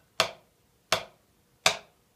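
Wooden drumsticks striking a rubber drum practice pad: three even single strokes, alternating hands, about 0.7 seconds apart, each a short crisp tap.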